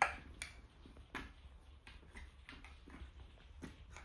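Light, irregular knocks and clicks of a wooden toy knife against play-food fruit pieces as they are cut and handled, about eight in all, the first the loudest.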